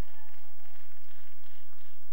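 Congregation applauding: a steady patter of many hands clapping.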